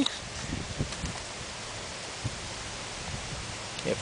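Faint rustle of dry leaves and compost as a compost thermometer's long metal probe is pushed down into the pile, with one small click a little after two seconds, over a steady outdoor hiss.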